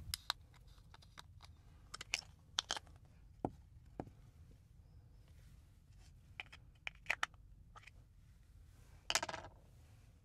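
Faint, scattered clicks and taps of hard plastic as a UK three-pin plug's screwed-on cover is lifted off and the plug is handled, with a short burst of noise near the end.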